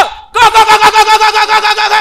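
A girl's high-pitched, drawn-out scream that wavers rapidly, about eight pulses a second. It starts a moment in and breaks off near the end. It is a reaction to a deliverance prayer of "Fire!".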